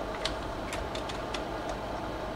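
Slide projector's fan running steadily while its mechanism changes to the next slide, giving several light clicks.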